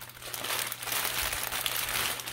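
Thin clear plastic bag crinkling continuously as it is handled and a fabric dog outfit is pulled out of it.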